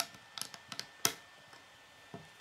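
Plastic Lego bricks clicking and tapping as a piece is pressed onto a small brick build: a handful of sharp clicks, the loudest at the start and about a second in.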